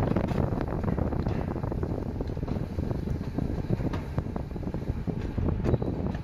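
Mountain coaster sled rolling along its steel rails, a steady rumble with many small rattles and knocks, with wind on the microphone.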